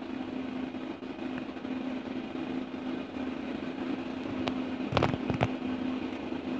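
A steady low mechanical hum, with a few short clicks near the end.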